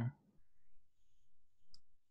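Faint room tone with one short click about three-quarters of the way through.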